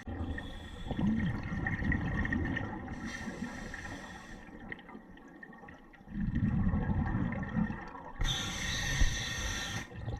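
Scuba regulator breathing heard underwater: a low bubbling rumble as the diver exhales, then a hiss as the diver inhales, twice over.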